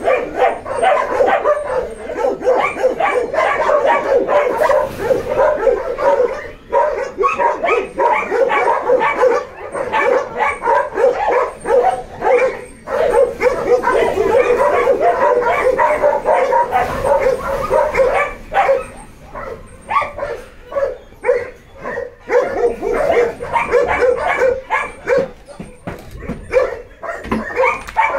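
Many dogs barking and yelping together without a break, a dense overlapping chorus of barks.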